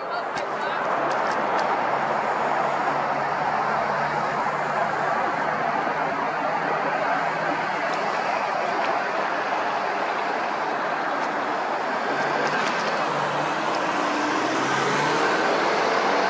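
Road traffic noise: vehicle engines and tyres on the road, a steady rush that builds up in the first second and holds, with an engine note rising near the end.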